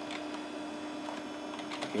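Steady hum of a running Packard Bell desktop PC, with a few faint keystrokes on its keyboard as a short command is typed.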